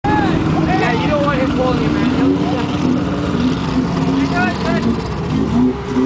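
A truck engine running steadily in a mud pit, with people's voices calling out over it.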